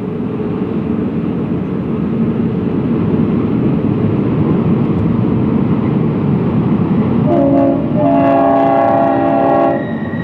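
Union Pacific E9 diesel locomotives and their passenger train running with a steady, building rumble. Near the end the locomotive's air horn sounds a chord of several tones: a short blast, then a longer one of about a second and a half.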